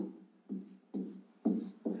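Felt-tip marker writing a row of zeros on a whiteboard: about four short scratchy strokes, roughly two a second.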